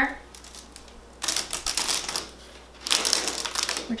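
Plastic wall stencil being peeled off a textured wall against its spray adhesive: two spells of rapid crackling, each about a second long, the first starting about a second in and the second near the end.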